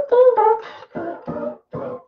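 Ensoniq Mirage 8-bit sampler keyboard playing sampled notes: a quick series of about five notes and chords, their pitch bending and wavering instead of holding steady. The warble is the sign of the sampler's malfunction.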